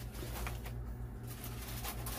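Steady low electrical hum of a running kitchen appliance, with a few faint light taps over it.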